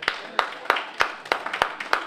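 Rhythmic hand clapping, about three sharp claps a second.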